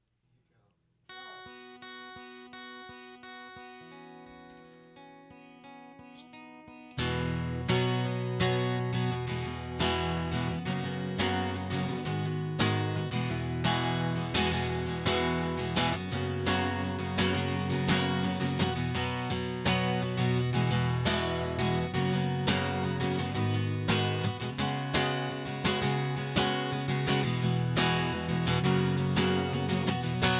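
Acoustic guitar intro: soft, ringing notes begin about a second in, then about seven seconds in the guitar breaks into loud, steady rhythmic strumming.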